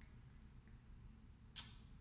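Near silence: faint room tone, with one brief soft hiss about a second and a half in.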